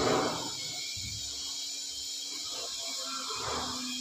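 Soft scraping of a steel spoon scooping crumbly cauliflower filling and pressing it into a cup of paratha dough, faint under a steady hiss.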